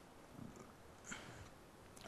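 Near silence: room tone on a headset microphone, with two faint soft sounds, about half a second and about a second in.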